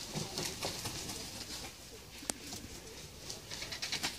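Birds calling low among scattered soft knocks and rustles, with one sharp click a little over two seconds in.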